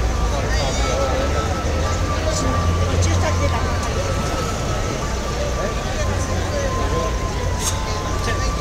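Crowd of demonstrators talking among themselves, an indistinct babble of voices over a steady low rumble, with a faint steady high tone running through it.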